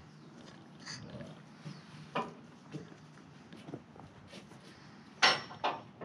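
Scattered light ticks and taps over a faint hiss, with two sharper knocks close together about five seconds in.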